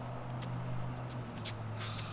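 A steady low hum runs underneath. Near the end, the hiss of a garden hose spraying water starts.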